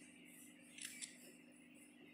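Near silence with a faint double click about a second in: a phone camera's shutter as a photo is taken.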